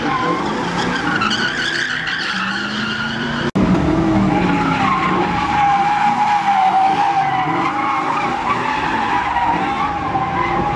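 Car tyres squealing without a break while a car spins sideways in tyre smoke, with its engine revving underneath; the squeal wavers in pitch. The sound drops out for an instant about three and a half seconds in, then comes back slightly louder.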